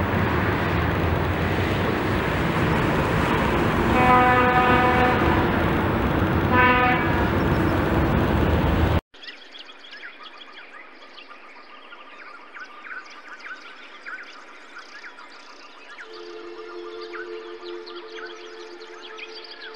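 Highway traffic noise with a vehicle horn honking twice, a long blast about four seconds in and a shorter one near seven seconds. At about nine seconds the sound cuts off abruptly to quiet ambient music.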